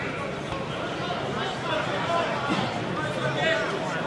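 Background crowd voices in a large sports hall: many people talking and calling out at once, none close enough to make out, a little louder in the second half.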